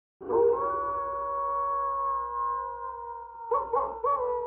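Canine howling: one long howl falling slightly in pitch, then a few short yelps near the end as a second howl begins.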